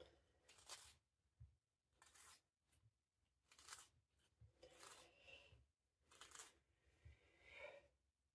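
Faint, scratchy crackles in short bursts, about one every second or so, as eggshell is worked off a hard-boiled egg with the fingers and a small knife.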